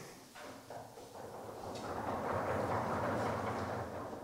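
Lecture-hall audience noise: a few scattered knocks, then a wash of sound that swells from about a second in and holds until near the end.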